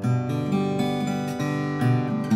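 Martin 00-28VS twelve-fret, 00-size acoustic guitar with a Sitka spruce top and rosewood back and sides, played with bare fingers. Bass and treble notes ring together, with fresh notes plucked at the start and again shortly before the end.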